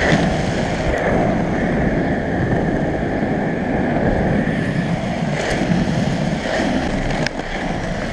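Skateboard wheels rolling over rough asphalt: a steady, coarse rumble, with a few faint ticks.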